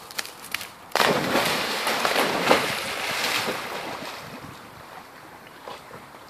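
A black Labrador leaps into the water with a sudden loud splash about a second in, followed by churning and splashing as it swims off, fading away over the next few seconds.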